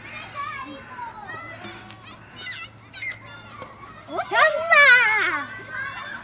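Children's voices: indistinct chatter, then about four seconds in a loud, wavering high-pitched call from a child that slides down in pitch over about a second.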